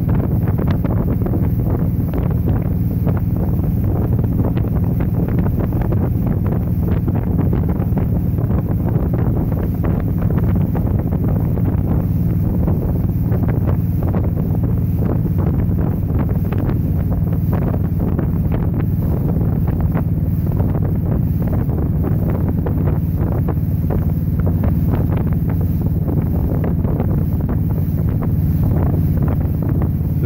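Motorboat running at speed: a steady low drone with the rush of water spraying off the hull, heavily buffeted by wind on the microphone.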